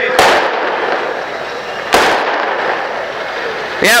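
Firecrackers going off: a sharp bang just after the start and another about two seconds in, each trailing off in a crackling, echoing haze.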